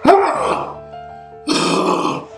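Background music under a man's loud, angry groan at the start and a second rough yell about one and a half seconds in.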